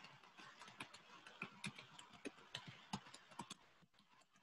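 Faint, irregular clicks and taps of typing on a computer keyboard, a few strokes a second, picked up over a video call.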